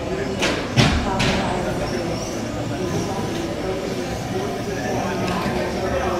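Indistinct voices carrying across a large indoor hall, with three sharp knocks about half a second apart in the first second or so, the second the loudest.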